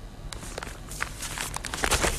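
Newspaper pages rustling and crinkling as they are handled and folded, growing louder and busier near the end.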